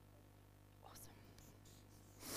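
Near silence: room tone with a faint steady low hum and one brief faint sound about a second in.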